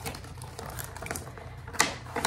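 Cardboard retail box and plastic packaging being handled and slid apart. A run of light crackles and clicks ends in one sharper snap near the end.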